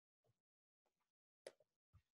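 Near silence, with a few faint soft knocks and rustles of a book being handled at the lectern microphone, the loudest about one and a half seconds in.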